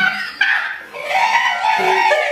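A group of people laughing hard, with one long, high-pitched squealing laugh rising and falling from about a second in.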